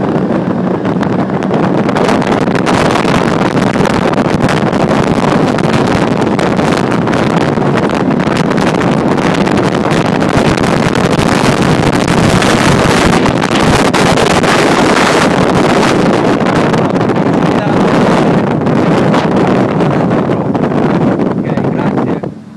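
Sea-Doo Speedster 200 twin-engine jet boat running flat out at full throttle, with loud, steady engine, jet-drive and rushing water noise and heavy wind buffeting on the microphone.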